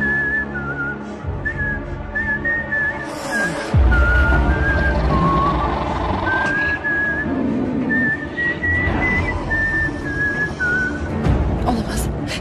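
A person whistling a tune, a string of short wavering high notes, over orchestral film score.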